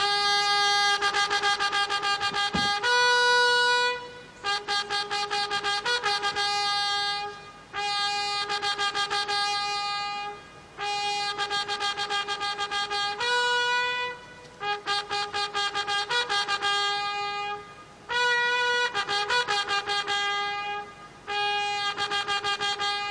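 Herald trumpets of the President's Bodyguard sounding a fanfare for the national salute. The fanfare comes in phrases of quick repeated notes on a few pitches, each phrase lasting about three seconds, with short breaks between them.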